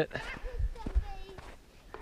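Footsteps in snow: a few soft, low steps in slip-on shoes as a walk begins, with faint voices in the background.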